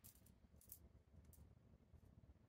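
Near silence, with a few faint light clicks as jewelry is handled and taken off the wrist.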